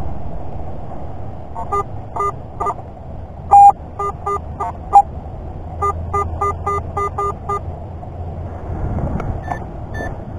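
Garrett AT-series metal detector giving short beeps in bunches as its coil is swept back and forth over a target, with two much louder beeps in the middle. Near the end a Garrett pinpointer starts up with a higher, steady tone.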